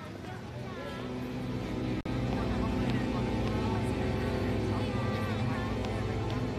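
Night street ambience with distant voices and traffic. A low, sustained film-score drone swells in about two seconds in, just after a brief dropout, and grows louder.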